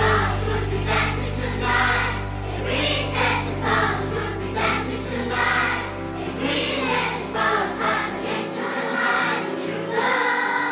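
A passage of the band's song with choir-like group singing and no clear words, over low held notes; the deepest note dies away near the end.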